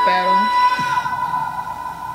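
Pop music-video audio: a short vocal call over a held note that fades out about a second in, leaving the track much quieter.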